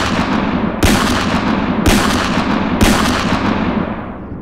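A run of loud blast sound effects, like gunshots or explosions, about one a second. A new blast hits about one, two and three seconds in, each starting sharply and trailing off into a noisy decay that runs into the next.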